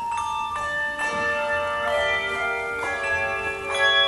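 Handbell choir ringing a tango: chords of handbells struck every half second to a second, each set of tones ringing on under the next.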